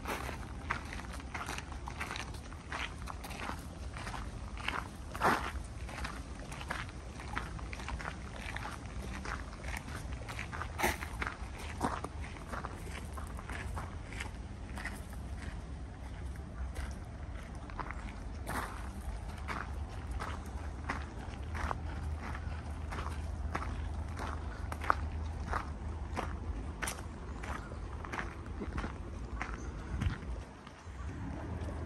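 Footsteps on a park path at a steady walking pace, a short scuff or crunch with each step, over a steady low rumble.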